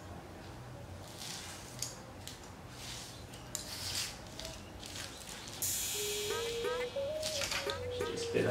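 Utility knife blade drawn along a ruler through thin kite tissue paper, a series of faint, scratchy slicing strokes. A little over five seconds in, a louder crisp rustle of the tissue sheet being handled takes over.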